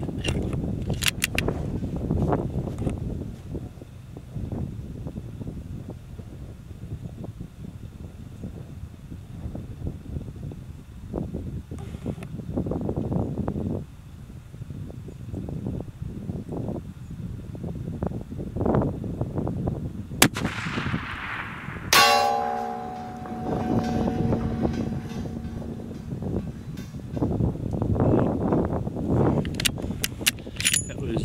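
A single shot from a Savage 110 .338 Lapua Magnum rifle with a muzzle brake, about two-thirds of the way in. About two seconds later comes a sharp metallic clang that rings on for a few seconds: the bullet striking the steel target plate behind the soda can. Bolt clicks as a round is chambered are heard near the start.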